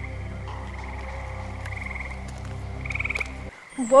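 Frogs calling at night: short pulsed trills repeating every second or so, over a steady low hum that cuts off suddenly about three and a half seconds in.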